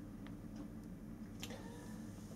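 Quiet room tone with a low steady hum, broken by two faint light clicks, one a quarter second in and one about a second and a half in.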